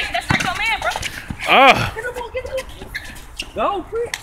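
People shouting on an outdoor basketball court. A short call comes early, a louder drawn-out yell about a second and a half in, and another short call near the end, with a few short thuds of a ball being dribbled near the start.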